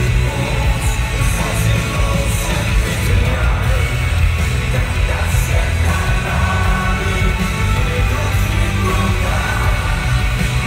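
Loud live hip-hop concert music heard from within the crowd, heavy in the bass, with the audience yelling and singing along.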